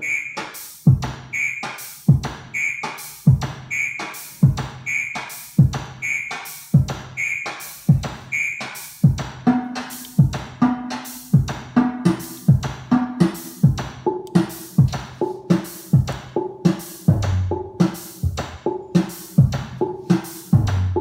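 Eurorack modular synthesizer drum voices playing a looping electronic drum pattern, triggered step by step by a Baby-8 eight-step sequencer. A short high blip on the beat gives way about halfway through to a lower pitched synth note, and deep bass-drum hits come in near the end.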